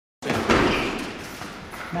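Voices echoing in a large gym, with a sudden thud or shout about half a second in that dies away.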